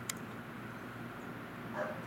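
A single light click of the steel piano hinge as it is set and lined up along the wooden box edge, over a steady low room hum. A brief faint sound follows near the end.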